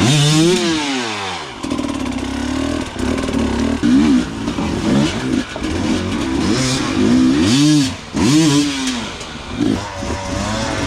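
Enduro motorcycle engine being revved hard in repeated bursts, its pitch rising and falling with each blip of the throttle, as the bike is worked up over rocks under load. There is a big rev at the start and a quick run of sharp blips near the end.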